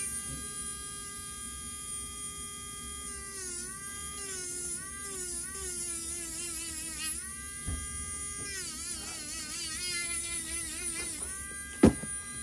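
Podiatry electric nail drill with a conical grinding burr, running with a high, buzzing whine as it grinds down a thickened big toenail. Its pitch dips and wavers over and over as the burr is pressed onto the nail, and a single sharp knock comes near the end.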